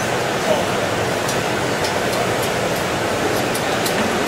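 Steady rushing noise of a gas-fired glory hole (reheating furnace) burning while a glass piece on a blowpipe is reheated in it, with a few faint ticks.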